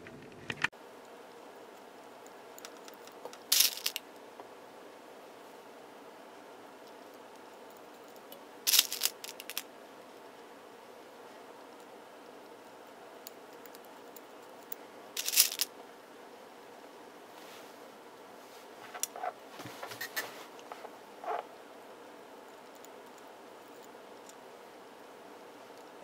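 Metal ribber needles of a Tru-Knit circular sock machine being put into the ribber's slots by hand: a few sharp clicks several seconds apart, then a cluster of lighter taps near the end, over faint room hiss.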